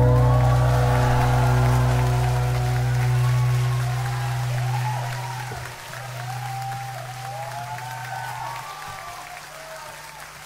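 The last acoustic guitar chord rings out and fades over several seconds while a concert crowd applauds and cheers with high-pitched screams.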